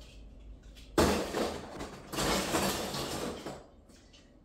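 Rummaging through a clear plastic storage tote of ornaments: plastic rustling and rattling in two loud stretches, the first starting suddenly about a second in.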